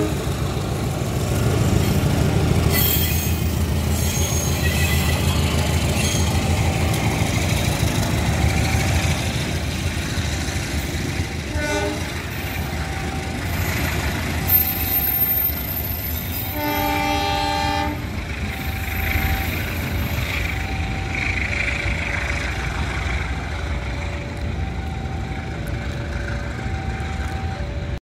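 Diesel-hauled train of ballast hopper wagons rolling past, with the heavy rumble of the locomotive and wheels on the rails, strongest in the first ten seconds. A train horn blasts for over a second about seventeen seconds in, and a repeating two-note beeping runs underneath from about six seconds on.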